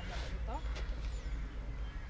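Wind rumbling on the microphone, with faint rustling as the drawstring of a trekking backpack's top is pulled shut. A short rising voice sound comes about half a second in.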